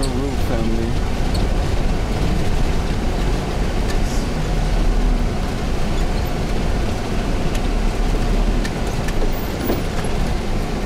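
Inside a Toyota Coaster minibus moving slowly along a gravel road: a steady low engine drone with the rumble of tyres on gravel.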